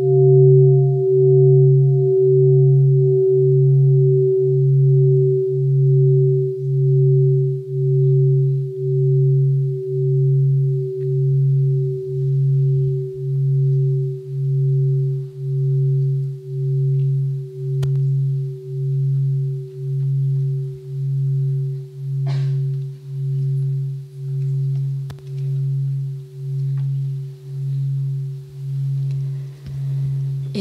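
A large Buddhist bowl bell ringing out after being struck and slowly fading, its deep hum wavering about once a second. There is a faint knock about two-thirds of the way through.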